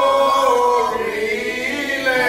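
Church congregation singing together in a group, holding long, slowly gliding notes.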